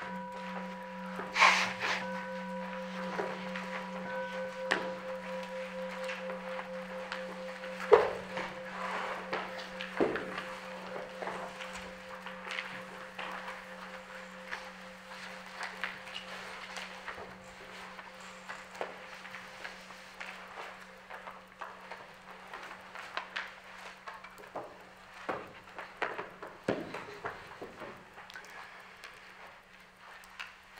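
A singing bowl rung once, one long low ringing tone with higher wavering overtones that slowly fades. A few faint clicks and knocks sound over it, the loudest about a second and a half in and again about 8 and 10 seconds in.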